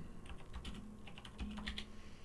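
Light typing on a computer keyboard: a scattering of faint key clicks while a Bible verse is looked up.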